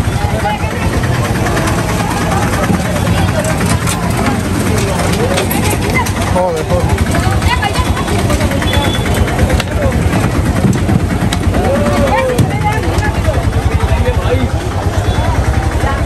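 Many voices of a crowd talking over the steady low rumble of a running engine.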